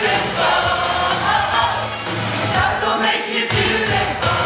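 A large group of teenage boys and girls singing together as a choir over musical accompaniment.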